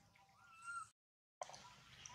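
A long-tailed macaque's high-pitched coo call, one short cry about half a second long that rises and falls in pitch. The sound then drops out completely for half a second at an edit.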